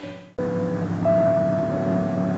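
A burst of title music cuts off sharply just after the start. A cartoon car engine sound effect then runs steadily, with a slow tune of long held notes over it.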